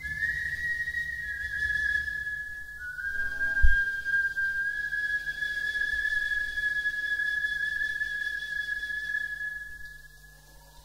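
A single high, pure whistle-like tone held for nearly ten seconds, stepping down in pitch a few times in small steps. There is one low thump about three and a half seconds in, and the tone fades out near the end.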